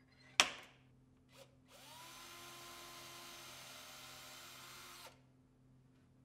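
A single sharp tap as a punch marks the hole, then a cordless drill spins up, runs steadily for about three seconds drilling a mounting hole into the wooden piano keyframe, and stops abruptly.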